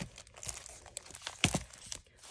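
Clear plastic wrapping crinkling as hands pull a satin ribbon off and open the sleeve, with a sharper crackle about one and a half seconds in.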